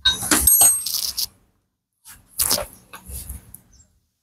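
Metal hand tools set down with a clatter and a brief high metallic ring, then a second bout of clinks and knocks about two seconds later.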